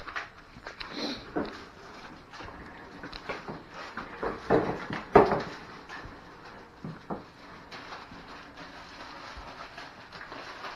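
Scattered knocks, clicks and rustling as a new portable generator is unpacked from its plastic wrap and cardboard, with parts handled and set down.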